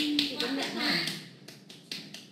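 A voice talking for about a second, then several short, light taps over quieter background.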